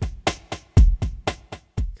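Drum loop played through Ableton Live 12's Roar saturation effect, its high-band shaper level modulated by a random noise oscillator, so the beat sounds distorted and transformed. A deep kick lands about once a second, with quick sharp clicky hits between.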